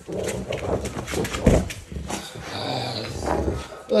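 Rottweilers tugging and worrying a jute bite pillow, growling as they pull, with irregular scuffling and knocks of paws and fabric on a hard floor and one heavier thump about a second and a half in.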